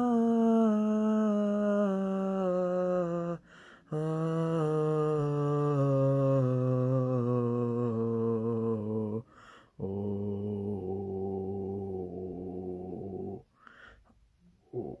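A low male-range voice sings three long held descending runs, each stepping slowly down in pitch, with a short breath between them. The last run is the lowest and a little quieter: the singer is probing the bottom of a range deepened by twelve weeks of testosterone.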